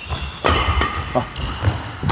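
Badminton shoes squeaking and thudding on the court floor as a player moves quickly back to the rear court for an overhead shot. The squeaks are high and steady in the second half, over low footfall thuds.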